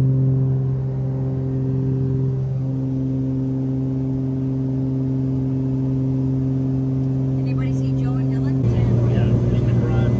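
Steady droning hum of a small aircraft's engines, heard from inside the cabin in flight. Near the end the drone turns rougher and a little louder.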